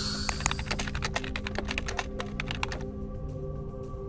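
Typing sound effect: a quick run of keystroke clicks that thins out after about three seconds, over a soft music bed, as on-screen text is typed out.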